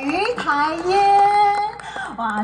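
A woman's voice over the concert sound system, sliding up in pitch and then holding one steady note for about a second. There is no band accompaniment.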